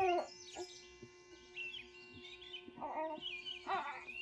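Steady ringing tones, like chimes, held throughout, with short high gliding cries or chirps over them, the loudest right at the start and again a little before the end.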